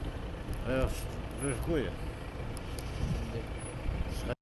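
Steady low rumble of a vehicle engine idling, with a man's voice heard briefly twice in the first two seconds.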